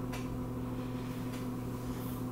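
A steady low electrical hum with a few faint clicks: room tone in a pause between speech.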